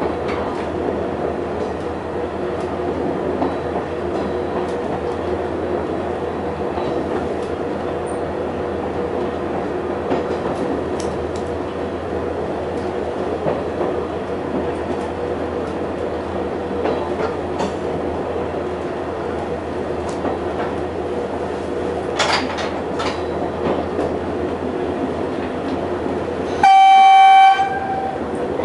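Dm7 'Lättähattu' diesel railcar running steadily along the track, heard from the cab, with its diesel engine's even drone and occasional knocks from the rails. Near the end the railcar's horn sounds once, a loud blast of about a second.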